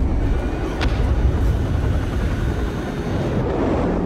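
Film sound mix of an underwater nuclear blast: a loud, deep, continuous rumble with aircraft noise over it, and one short sharp click a little under a second in.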